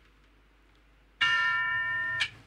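Near silence, then a little over a second in a bell chime sounds suddenly and rings on steadily, several pitches at once.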